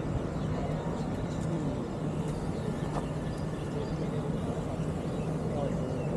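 Steady low outdoor rumble with faint voices in the background.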